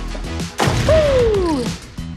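An edited-in sound effect over background music: a sudden crash about half a second in, followed by a smooth tone that falls in pitch for about a second.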